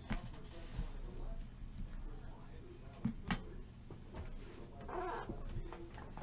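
A few faint knocks and clicks of cardboard product boxes being handled and pulled from a shelf, over a low steady room hum.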